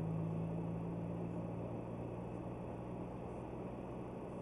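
Car engine and road noise heard from inside the cabin: a steady low hum over a haze of rolling noise that eases off slightly toward the end.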